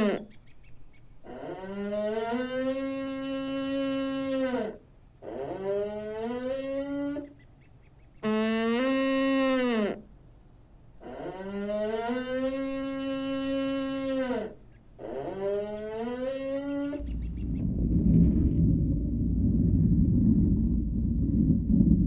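A deer calling: five long, drawn-out calls with short gaps between them. Each rises at the start, holds a steady pitch and drops away at the end. Near the end the calls stop and a loud, steady low rumble takes over.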